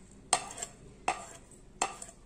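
Steel spoon clinking against a ceramic plate and glass bowl while scooping whole cumin seeds: three short, sharp clinks spread across two seconds.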